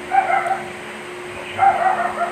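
A dog yipping in two short bouts, over a steady hum.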